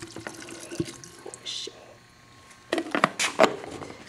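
Water poured from a plastic water bottle into a plastic blender jar, a faint trickle with small drips. About three seconds in comes a short burst of louder, sharper sounds.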